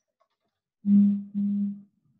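A person humming a short two-part closed-mouth 'mm-hmm' at a steady pitch, about a second in.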